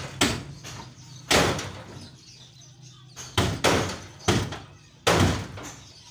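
Hand hammer striking steel at the rear of a light truck being stripped for parts: about seven sharp, unevenly spaced blows, each with a short metallic ring, two of them in quick succession a little past the middle. A faint steady low hum sits underneath in the first half.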